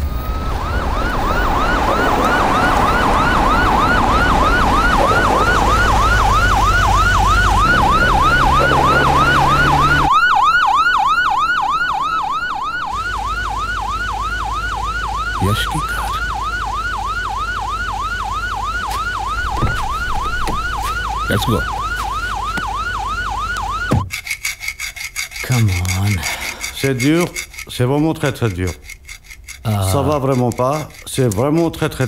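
Police car siren in a fast yelp, its pitch sweeping up and down about three to four times a second over a low rumble, cutting off suddenly about three-quarters of the way through.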